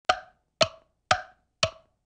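Four sharp wooden knocks, evenly spaced about half a second apart, each with a short hollow ring.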